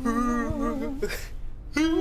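A person's voice making a long, wavering hummed 'oooo' in play, like a mock ghost. A second, higher 'oooo' starts near the end and runs into laughter.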